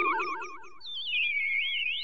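Warbling, theremin-like electronic tones with a fast vibrato wobble in pitch: an outro jingle. One group of tones fades out about halfway, and a new high warble comes in and slides down to a lower pitch.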